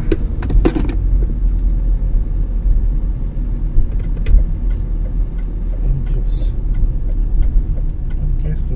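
Steady low rumble of a car's engine and tyres heard inside the cabin while driving, with a short high hiss about six seconds in.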